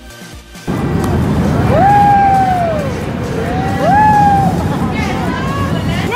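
Music cuts off under a second in and gives way to the loud, noisy din of an indoor amusement ride. Over it come two long squeals that rise, hold and fall, then fainter ones near the end: children shrieking as the Frog Hopper kiddie drop tower bounces them down.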